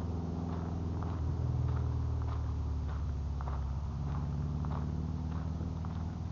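A vehicle engine running at low speed, its pitch rising a little about a second in and easing back down about four seconds in, with light knocks about once a second as it rolls over a dirt road.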